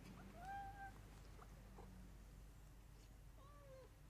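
Near silence, with two faint, short animal calls, one about half a second in and one falling in pitch near the end, and a few faint clicks between them.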